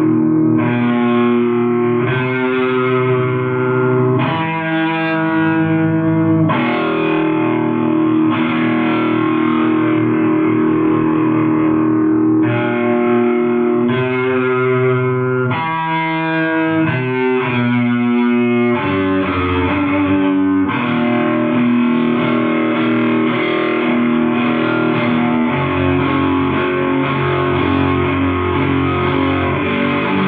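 Distorted electric guitar playing a slow riff of held notes on a 1995 metal band's demo tape recording. The notes change every second or two, and the texture turns denser and more continuous about two-thirds of the way through.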